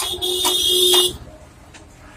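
A single loud honk of a horn, one steady tone lasting about a second and cutting off suddenly.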